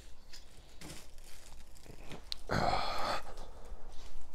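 Rustling and small clicks of handling, with a louder rustle lasting about half a second a little past the middle.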